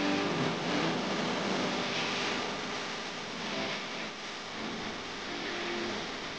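Steady hiss of cabin and road noise inside a car, slowly fading.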